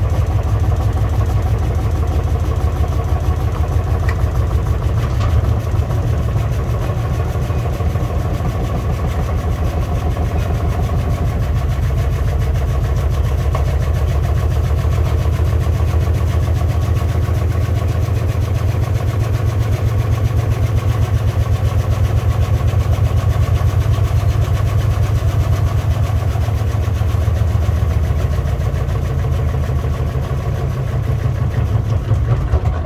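Beko AquaTech front-loading washing machine spinning its drum at high speed with a heavy hoodie inside: a loud, steady motor and drum rumble with a fast, even pulsing.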